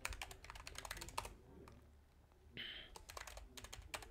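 Computer keyboard typing: quick runs of keystrokes, a short lull in the middle, then more keystrokes. A brief hiss comes about two and a half seconds in.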